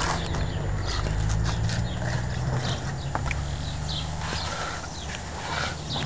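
Irregular footsteps and knocks of handling on a handheld camera, over a steady low rumble.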